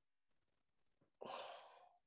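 Near silence, then a little over a second in, a man's breathy exhale, a short sigh lasting just over half a second and fading out.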